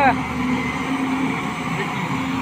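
Heavy diesel machinery engine running steadily, a constant drone with no revving.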